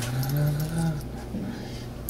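Coins jingling and clinking in a hand as change is dug out to pay, with a drawn-out hum from a man's voice rising in pitch during the first second.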